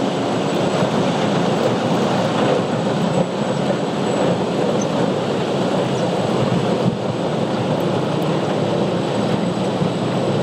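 Steady rumble and water noise of an inland motor cargo ship passing close by.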